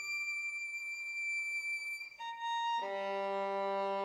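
Slow solo violin melody. A long high note is held for about two seconds, then the line steps down to lower notes, and a low sustained tone enters underneath near three seconds in.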